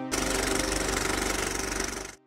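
Logo sting sound effect: a loud, dense mechanical rattle with a fast flutter that starts suddenly and cuts off after about two seconds, leaving a few tones ringing briefly.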